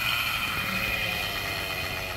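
Goblin Raw 700 Nitro RC helicopter's nitro glow engine and rotors running with a steady high whine while it touches down on the pad, the sound easing off a little as it settles.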